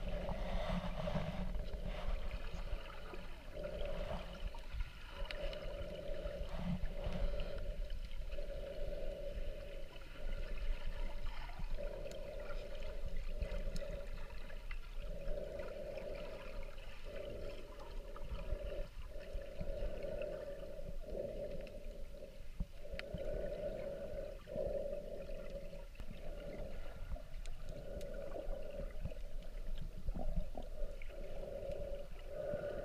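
Muffled underwater sound picked up by a camera held below the surface: a steady low rumble of moving water, with a hum-like tone that swells and fades every second or two.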